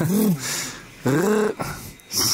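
Two short wordless vocal sounds from a person, each rising and then falling in pitch, about a second apart.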